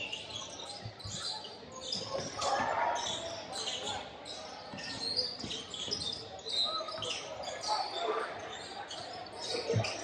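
A basketball being dribbled on a hardwood gym floor, a thud about every half second or so, with sneakers squeaking on the floor, in the echo of a large gym.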